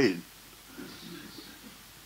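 A man's voice through a handheld microphone trails off on a word at the start, followed by a pause of nearly two seconds with only faint low background murmur of the room.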